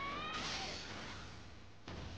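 A woman's high shout from the anime's soundtrack, rising in pitch and ending about a third of a second in, then a rush of noise that dips briefly near the end.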